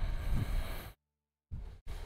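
Handling noise of hands stretching rubber bands around a smartphone: a rubbing, rustling burst lasting about a second, then a brief silence and two shorter bursts near the end.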